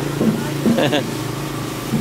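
A man's voice in a phone conversation, heard briefly, over the steady low hum of a running engine.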